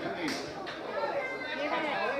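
Faint chatter of voices at a football ground, with one brief knock about a third of a second in.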